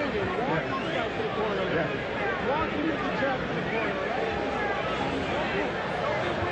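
Arena crowd noise: many voices chattering and calling out at once, a steady babble.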